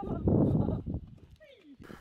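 A person laughing briefly with a breathy sound, dying away within about a second, followed by a short falling vocal note.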